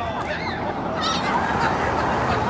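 Young children shrieking and shouting excitedly in short high-pitched squeals, over a general babble of voices.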